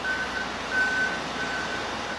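A vehicle's reversing alarm, a single high beep repeated roughly twice a second, over a steady wash of traffic noise.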